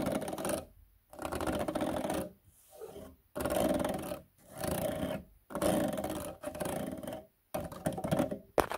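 Fingertips and nails scratching fast across a ribbed plastic grille close to the microphone, a rapid rasping in bursts of about a second with short pauses between, seven or so times over.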